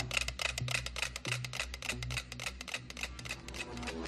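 Nine mechanical metronomes ticking at once on a shared free-swinging platform, a rapid, slightly uneven stream of clicks. The platform's swing couples them so they are pulling into step with each other.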